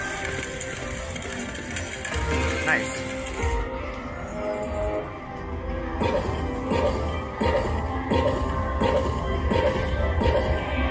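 Big Hot Flaming Pots video slot machine playing its bonus-feature music and effects: steady electronic tones, then, about halfway through, a run of short rising chimes roughly twice a second as the coin values on the reels count up.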